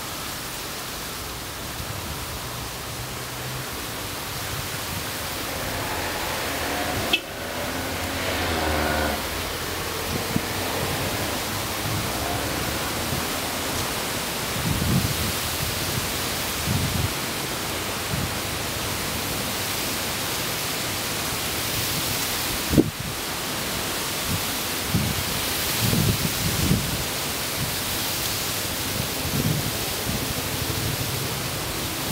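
Steady hissing rush of noise, with a few low thuds and two brief sharp clicks.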